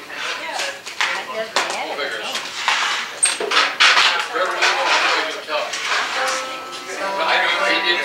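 Room chatter with light clinking throughout, and a few sustained string notes ringing near the end.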